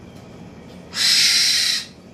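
A caged bird gives one harsh, rasping call lasting just under a second, starting about a second in.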